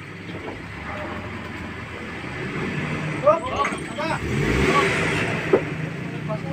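A vehicle engine running, growing louder from about halfway through and easing near the end, with brief shouts of men's voices and one sharp knock near the end.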